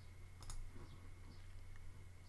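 Faint computer mouse click about half a second in, followed by a few fainter ticks, over a low steady hum.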